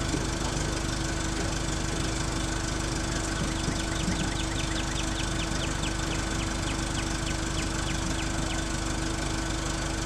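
An engine idling steadily with a constant hum. Through the middle a faint, quick series of high ticks, about three or four a second, runs over it.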